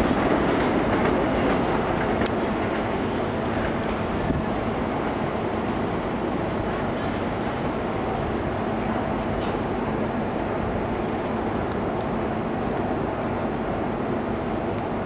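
Tobu 200 series electric train running on the rails, a steady rumble of wheels and running gear that eases off slightly over the first few seconds.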